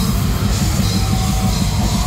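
Heavy metal band playing live: fast, dense drumming under distorted electric guitars and bass, with a vocalist singing a held, wavering line from about a second in.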